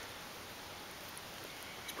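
Faint, steady rush of shallow creek water flowing.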